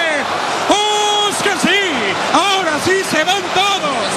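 A football commentator shouting in excitement as a late headed chance at goal is missed. A long held cry comes about a second in, followed by a quick string of short rising-and-falling exclamations.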